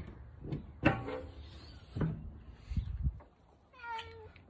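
Domestic cat meowing once near the end, an unhappy drawn-out meow from a cat in an e-collar that does not want to leave the car. A few soft knocks come before it.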